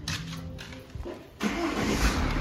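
Tata car's engine starting about one and a half seconds in, then running.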